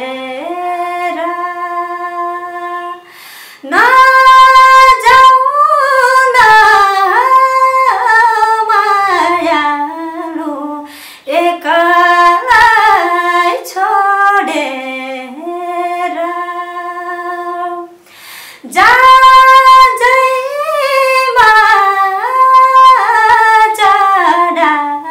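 A woman singing solo and unaccompanied, in long ornamented phrases with held notes, pausing briefly for breath about 3, 11 and 18 seconds in.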